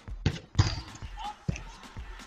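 Three dull thumps of a football being struck and bouncing. The loudest comes about half a second in, and the last about a second later. Players' voices are faint in the background.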